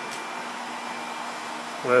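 A steady, even background whir like a fan or blower, with a faint hum under it. A word of speech begins right at the end.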